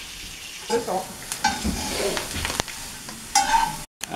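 Butter sizzling in a pan on a gas burner as it is browned, its water cooking off. A single sharp click comes a little past halfway.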